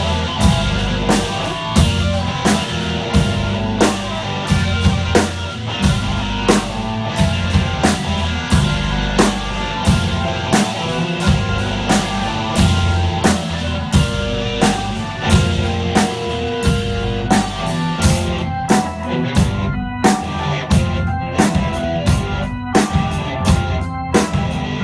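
Live rock band playing an instrumental passage: drum kit keeping a steady beat under bass and electric guitar. The playing thins out over the last few seconds, with short breaks between the drum hits.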